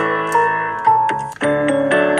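Piano music: a melody over chords, each note struck sharply and then ringing and fading, with a new note about every half second.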